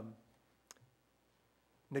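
A man's drawn-out 'um' trails off, then a single faint click sounds about two-thirds of a second in. After that there is quiet room tone until his speech starts again near the end.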